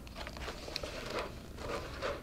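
Soft rustling of a paper-and-board pamphlet binder being handled and shifted on a cutting mat, with a faint tick about a second in.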